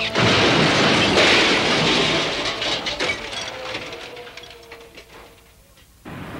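Cartoon sound effect of a truck slamming into a concrete wall: a sudden loud crash of crunching metal, then clattering debris that fades away over several seconds.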